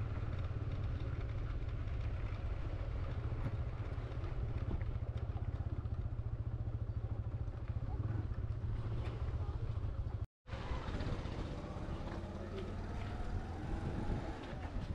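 TVS Apache 160 motorcycle running at low speed over a dirt track, a steady low rumble. It cuts out abruptly about ten seconds in, leaving quieter outdoor sound.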